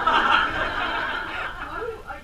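An audience laughing together, breaking out suddenly at full strength and easing off over about two seconds.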